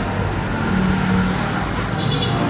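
Road traffic noise: a steady rush with a motor vehicle's low engine hum that swells about a second in.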